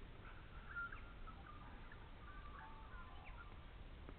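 Faint chirping and twittering of small birds: a run of short, irregular calls in the first three seconds, over a low steady rumble.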